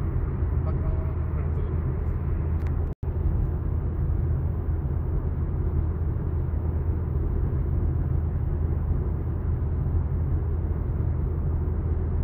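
Steady low rumble of a car's road and engine noise heard from inside the cabin while cruising. The sound cuts out for an instant about three seconds in.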